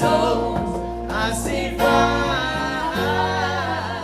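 A singer holding long, wavering sung notes into a microphone, with acoustic guitar accompaniment, at an unplugged live performance.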